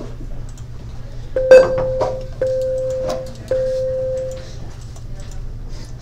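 A bell-like chime sounding three times at the same pitch, about a second apart, each note ringing and fading; the first note, with a sharp strike, is the loudest.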